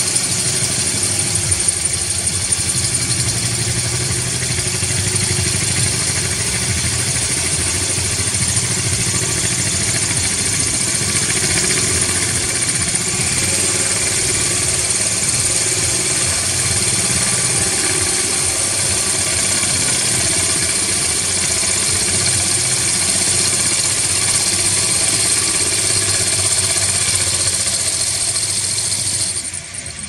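Handheld electric drill running steadily, its 1/4-inch glass bit grinding a hole through 6 mm glass, with a motor hum under a sharp, high grinding hiss. The drill cuts off near the end.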